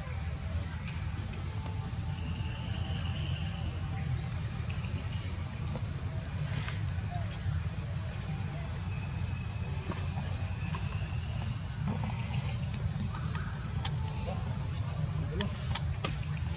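Steady, high-pitched drone of forest insects, holding two even pitches throughout, over a low rumble, with short high chirps now and then.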